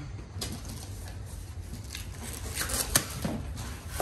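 Cardboard shipping box being opened by hand: a few scattered rustles and scrapes of the flaps and packing, over a steady low hum.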